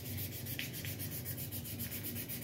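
Oiled 1000-grit abrasive paper rubbed briskly back and forth on a steel sword pommel in quick, even strokes, scrubbing off surface rust.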